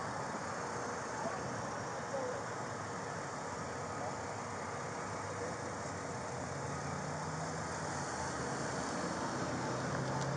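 Passing car traffic at a street intersection: steady road and engine noise, with a car passing close by. About six and a half seconds in, a low steady engine hum sets in and holds.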